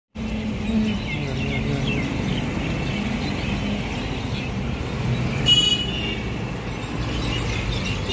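Road traffic: a steady low rumble of vehicles moving, with a short, high horn toot about five and a half seconds in.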